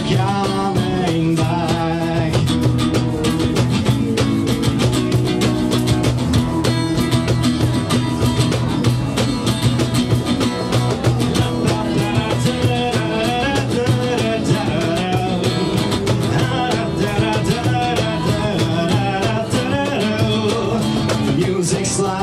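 Live acoustic song played by a small band: steel-string acoustic guitar strummed over a steady cajón beat, with a shaker adding a quick rhythm.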